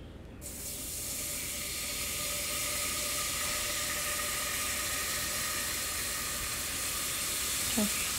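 Beef broth poured into a hot butter-and-flour roux, sizzling and hissing as it hits the pan. The hiss sets in suddenly about half a second in, swells over the next second, then holds steady.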